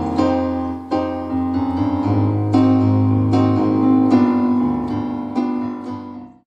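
Korg digital piano played solo, with chords struck roughly once a second and left to ring. These are the closing bars of the song, fading away near the end.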